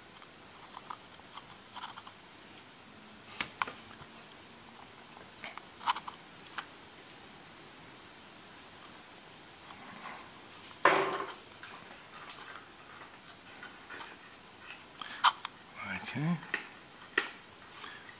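Scattered light clicks and taps as a soldering iron tip and a polyethylene filler strip are worked into a cracked plastic bottle for a plastic weld, over quiet room tone, with one louder short knock about eleven seconds in.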